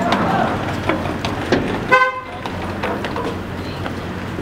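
A single short vehicle horn toot about two seconds in, over a steady low engine hum and scattered knocks of footsteps on a steel ramp.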